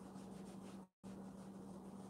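Faint, repeated rubbing of a soft cloth pad over eel-skin leather, wiping off excess conditioning cream, over a steady low hum. The sound cuts out completely for a moment just before the middle.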